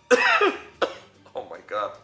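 A man coughing: one loud, rough cough just after the start and a shorter, sharper one a little under a second in, followed by a spoken word.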